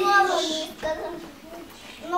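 A young child's voice singing a short falling phrase at the start, followed by quieter voice sounds.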